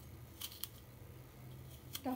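A knife cutting through a tomato held in the hand, with a few faint, short clicks of the blade.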